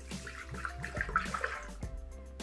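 Soy milk poured from a bottle into a stainless steel food-processor mixing bowl, a liquid splashing and running sound that tails off near the end, with quiet background music underneath.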